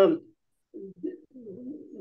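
A man's low, closed-mouth hum of hesitation, 'mmm', while searching for a word. It comes as two short bits a little under a second in, then a longer wavering one.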